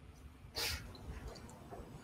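Quiet room tone on a video call, broken about half a second in by one short breathy puff, like a soft laughing exhale.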